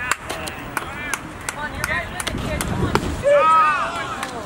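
Baseball game ambience: scattered shouted calls from players and spectators, with one louder, longer shout near the end, over many short sharp clicks.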